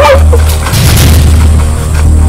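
Dramatic film-trailer soundtrack: a loud, steady deep bass drone with music over it.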